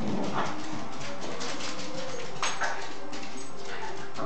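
A Yorkshire terrier's claws tapping on a hardwood floor as he moves about, a quick run of light clicks with a few sharper knocks.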